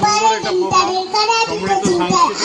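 Singing with held notes, mixed with a man's talking voice.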